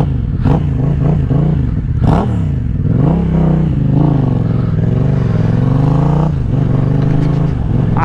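Yamaha MT-07's parallel-twin engine running under way, its pitch dipping and then rising again with the throttle about two to three seconds in, holding steady, then dropping off near the end. A couple of brief knocks come in the first two seconds.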